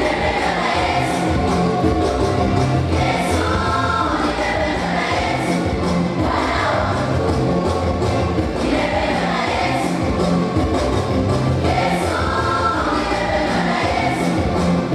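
A gospel song: a choir singing together over a steady band beat with bass.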